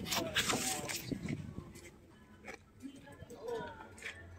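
Cardboard sleeve of a vinyl LP being handled and turned over, with brief rustles and knocks mostly in the first second. Faint voices of other people sound in the background.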